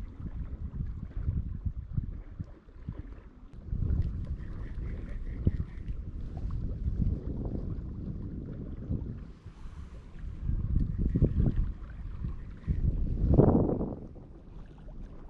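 Wind buffeting the microphone: a low, rough rumble that swells and drops in gusts, strongest near the end.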